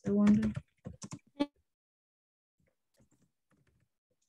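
A brief spoken sound, then a quick run of computer keyboard key clicks about a second in, followed by a few faint scattered key taps.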